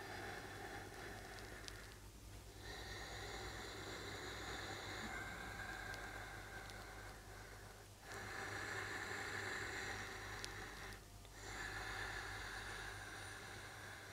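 A person's slow, faint breathing while holding a yoga pose: long breaths of about three seconds each, with short pauses between them, over a steady low hum.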